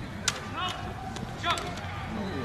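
Two sharp knocks about a second apart, from lacrosse sticks clacking together in play, over the voices of players and spectators.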